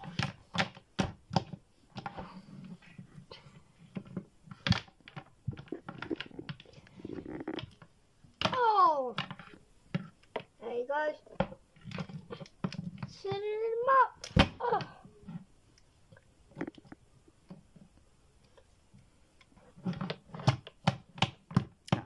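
Plastic action figures clacking and knocking against a hard shelf and each other as they are made to fight, in many quick taps. A voice adds gliding sound effects, a falling one about nine seconds in and a rising one near fourteen seconds, and the tapping pauses for a few seconds before picking up again.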